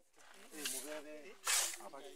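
People talking, with short hissing sounds about halfway through and about one and a half seconds in.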